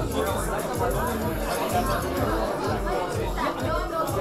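Many people talking at once in a large hall, with background music with a steady low beat under the chatter.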